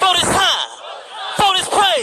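A man shouting excitedly through a microphone and PA, wordless or unclear, with a crowd cheering and yelling along.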